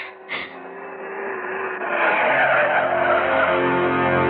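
Car tyres screeching in a drawn-out skid that grows louder, opening with two short sharp bursts. Music comes in under it about three seconds in.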